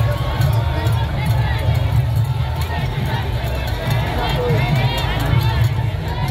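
Junkanoo parade music: a dense, steady beat of bass drums, with crowd voices shouting over it.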